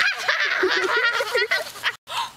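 A girl's high-pitched, squawky squealing laughter and shrieks, in quick broken bursts, as she is tickled.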